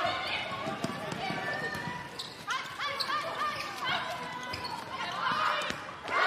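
Court sound of an indoor handball match: the ball bouncing on the hall floor and players' shoes squeaking in short chirps, with voices in the hall.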